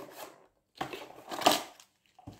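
Cardboard box being handled and opened, with a brief scrape at first and then a cluster of scraping, rustling sounds in the second second.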